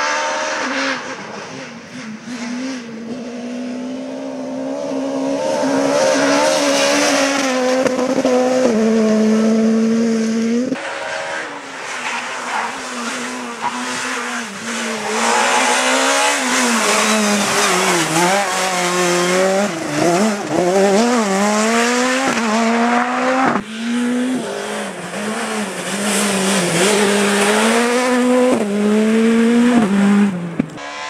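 Škoda Fabia rally cars running hard on a special stage, engines held high in the revs and rising and falling with gear changes and lifts. The sound jumps abruptly a few times where separate passes are cut together.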